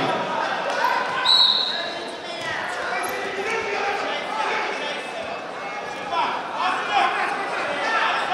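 Indistinct voices echoing through a large sports hall, with a brief high squeak about a second in.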